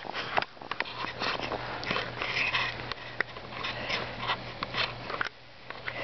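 Crunching and scrunching in fresh, shallow snow: short irregular bursts with sharp clicks among them, as feet move and the camera is handled.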